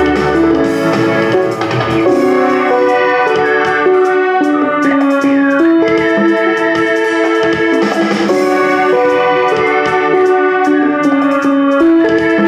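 Live band music: electronic keyboards playing sustained chords that change every second or so, over a quick ticking beat.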